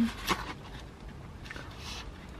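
Quiet rustling and light handling knocks as a plastic takeout tray lined with paper is lifted out of its container, over a low steady hiss.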